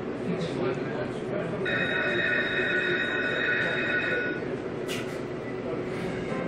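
A slot machine's electronic sound effect during a free spin: a held, high, multi-note tone lasting nearly three seconds. A single sharp click follows about five seconds in, over a low background murmur.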